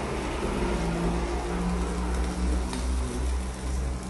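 Pork skewers and chicken sizzling on an electric grill, as a steady hiss over a low rumble.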